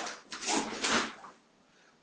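Short swishing noises from a karate practitioner moving through techniques: the cotton uniform and bare feet on the mat. There are about three quick swishes in the first second, then near silence.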